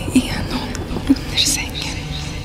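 A breathy whispered voice, in short bursts, over a low background rumble.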